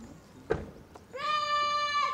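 A single sharp thump, then a loud, high-pitched, long-drawn-out shouted drill word of command, held at a steady pitch for about a second near the end.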